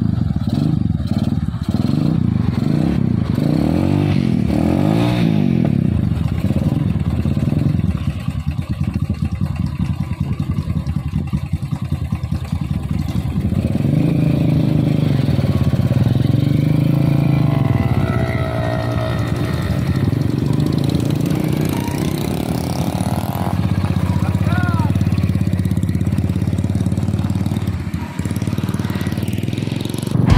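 Several motorcycle engines idling together, their pitch rising and falling now and then as throttles are blipped.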